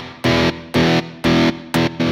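Sustained distorted electric guitar chopped hard on and off by a square-wave tremolo: a Subtractor LFO's control voltage switches the mixer channel's level. The pulse rate shifts as the LFO rate is raised toward eighth notes.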